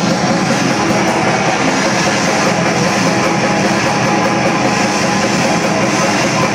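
A metal band playing live: electric guitars, bass and drum kit at full volume, a loud, dense wall of sound with fast, steady drumming.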